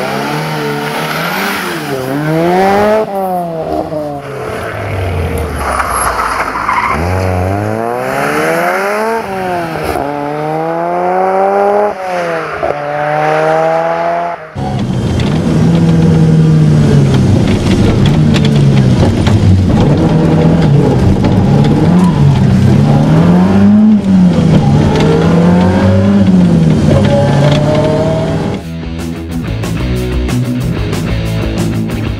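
Ford Sierra RS Cosworth's turbocharged 2.0-litre four-cylinder engine driven hard, its pitch climbing and dropping again and again through the gear changes. About halfway there is a sudden cut to a steadier, wavering engine note heard from inside the cabin.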